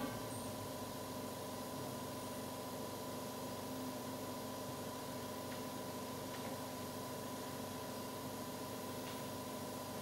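Hushed theatre room tone after an a cappella choir stops at the very start: a low, steady hum with two held tones and faint hiss, broken by a few faint clicks.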